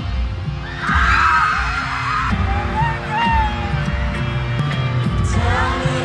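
Live band music over an arena sound system, recorded on a phone, with heavy, blurred bass throbbing under sustained chords. A crowd of fans screams loudest about a second in.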